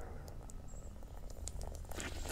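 Faint patter of water dribbling from a garden hose spray nozzle onto concrete, with a few light ticks.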